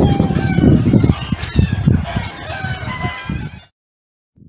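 A flock of chickens calling and clucking behind a hedge, over a loud low rumble on the microphone; it all cuts off abruptly near the end.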